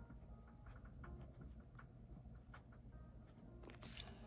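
Near silence: faint background music and soft marker-pen strokes on paper.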